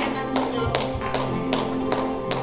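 Worship music with no singing: an acoustic guitar strummed in a steady rhythm, its sharp percussive strokes coming about two and a half times a second over sustained chords.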